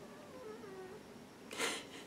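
A sleeping house cat snoring faintly, with a few soft, wavering whistle-like tones. A short breathy rush comes near the end.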